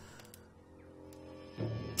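Quiet background score holding a sustained chord of several steady notes.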